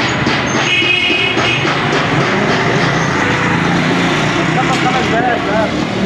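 Busy street noise: background chatter of people with a vehicle engine running steadily, and a brief high tone about a second in.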